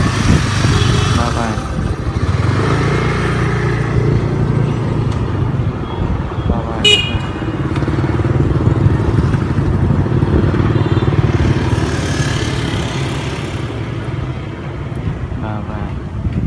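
Motor scooter engines running past on the street, rising and falling as they pass, with one short horn toot about seven seconds in.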